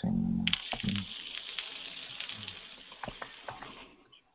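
Computer keyboard keys clicking irregularly as a console command is typed, over a rushing hiss that fades away toward the end.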